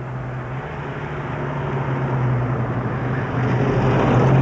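A 1950s Sunbeam saloon car's engine running steadily as the car drives closer, the sound growing steadily louder as it approaches.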